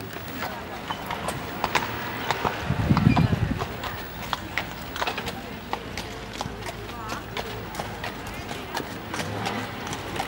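Hanoverian horse's hoofbeats at the trot on sand arena footing, a run of short sharp strikes, with a brief low rumble about three seconds in.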